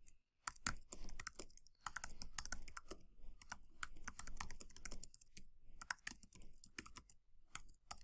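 Typing on a computer keyboard: a quick, irregular run of keystroke clicks with brief pauses between words.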